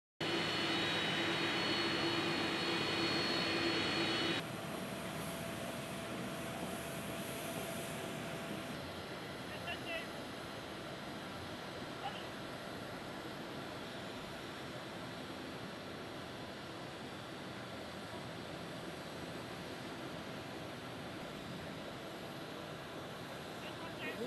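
Spanish Air Force Airbus A310 jet's turbofan engines whining loudly and steadily as it taxis; the sound cuts off abruptly after about four seconds. A quieter, steady outdoor background with faint voices follows.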